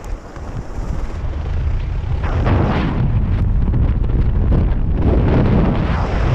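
Wind buffeting a GoPro microphone, mixed with the low rumble of an inflatable tube sliding fast over ski-jump slope matting. It grows louder over the first couple of seconds as the tube picks up speed, then holds steady and loud.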